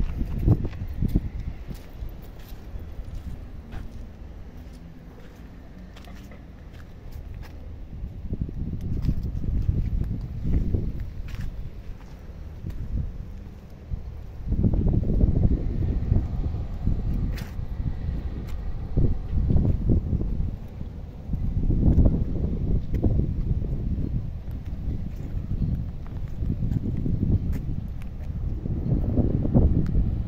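Wind buffeting the microphone in uneven gusts, strongest in the second half, with a few faint clicks.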